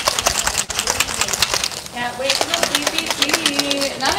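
A shaker bottle being shaken, with the whisk ball inside rattling in a fast, steady run of clicks to mix a protein smoothie.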